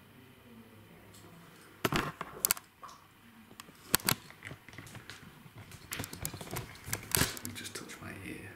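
Handling noise from a handheld camera being moved and turned around: irregular sharp clicks, knocks and rustles close to the microphone, in clusters about two seconds in, at four seconds, and again between six and seven seconds.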